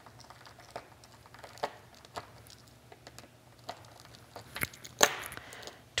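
Small screwdriver turning tiny screws into the metal back plate of a purse turn lock: faint, scattered clicks and scrapes of metal on metal. A louder rustle of handling comes near the end.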